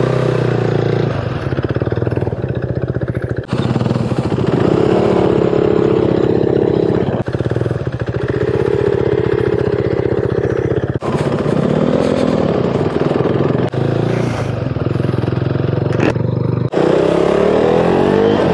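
Motorcycle engine running under way, its pitch climbing and dropping back several times as it accelerates through the gears, with wind noise on the microphone. The sound breaks off abruptly a few times.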